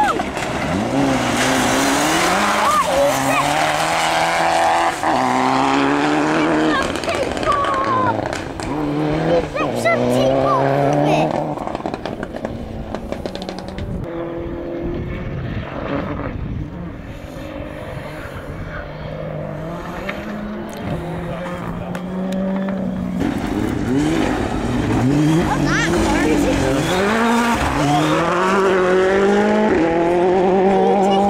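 Rally car engines on a gravel stage: a rally car revving hard with repeated rises and drops in pitch through its gear changes, fading away after about twelve seconds. A quieter, steadier engine follows from a second car further off, and in the last seconds that car's engine comes in loud, revving up and down as it approaches.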